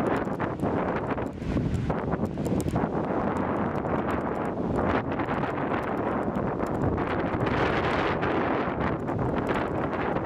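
Wind buffeting the camera's built-in microphone, a steady rumbling rush that swells and eases, with the wash of small waves breaking on the beach underneath.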